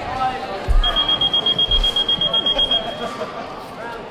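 Electronic bout timer sounding one long, steady, high-pitched beep of about two seconds, starting about a second in, over voices and chatter in the hall.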